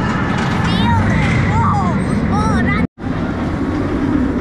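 Riders on the Oblivion vertical-drop roller coaster screaming, high cries that rise and fall over a steady low rumble of the ride and park. The sound cuts out abruptly about three seconds in.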